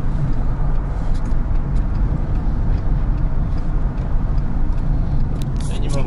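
Steady low rumble of road and engine noise inside a moving car's cabin, with a single click near the end.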